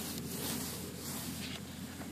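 A metal detector's search coil swept through grass, a soft steady rustle. The detector gives no beeps: its false signals have stopped with the sensitivity turned all the way down.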